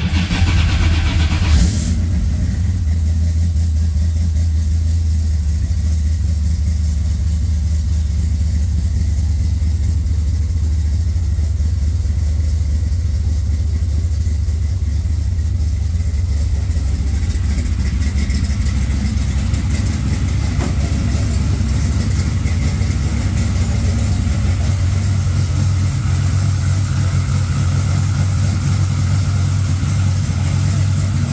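Fuel-injected V8 firing up on a push-button starter: it catches and runs up briefly for about two seconds, then settles into a steady idle, the idle note rising slightly near the end.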